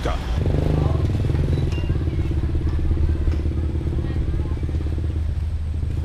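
A motorcycle engine running at a steady, low pitch close by, wavering slightly, then fading near the end.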